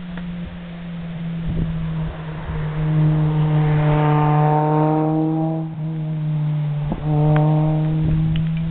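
A motor vehicle's engine running nearby at a steady pitch, growing louder over the first few seconds, breaking off briefly after a click near the end and then resuming.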